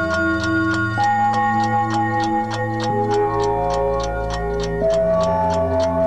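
Closing theme music of a TV talk show: sustained chords that change every second or so, over an even, clock-like ticking of about five ticks a second.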